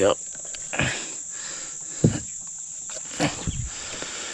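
Insects trilling steadily in one high, unbroken tone, with a few dull thumps of handling in an aluminium boat, the loudest about two seconds in.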